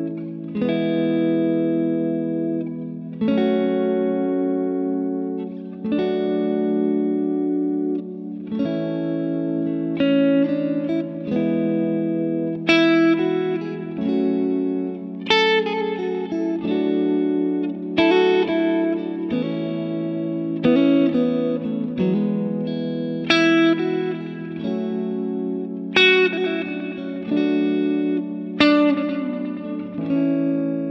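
Telecaster-style electric guitar playing triad chord shapes through an A major, E major, F sharp minor, D major progression. For the first ten seconds or so single chords are struck and left to ring, one about every three seconds. After that, quick single-note fills from the A major scale run between the chords.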